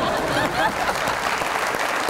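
Studio audience applauding and laughing, with a few laughing voices standing out in the first second.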